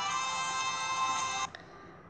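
Background music from a children's Bible-story game app, with sustained, chime-like notes that cut off suddenly about one and a half seconds in, leaving only faint room noise.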